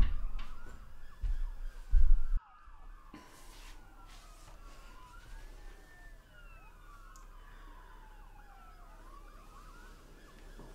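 Several sirens wailing at once, their pitches sliding slowly up and down and overlapping. In the first two and a half seconds, three loud low thuds break in, the last one cut off suddenly.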